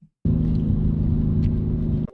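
Lamborghini engine running steadily, heard from inside the cabin: a low rumble with a steady hum. It cuts in suddenly about a quarter second in.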